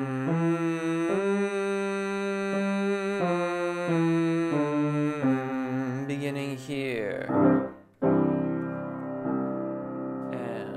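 A male bass-baritone voice sings a stepwise warm-up scale on a light "ooh" vowel over grand piano accompaniment, ending in a downward slide about seven seconds in. A piano chord then sounds near the end to set the next starting pitch.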